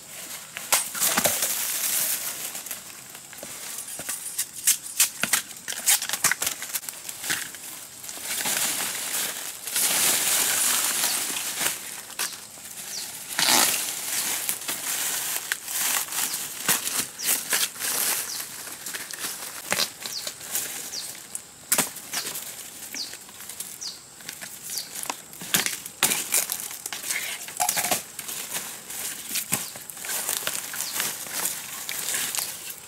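Dry bamboo leaves and stems rustling and crackling as someone pushes through a bamboo thicket and handles freshly cut bamboo shoots, with many sharp irregular snaps and crunches.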